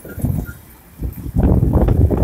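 Wind buffeting the microphone of a camera in a moving vehicle: irregular low rumbling gusts that ease off for a moment, then build up again and thicken about a second and a half in.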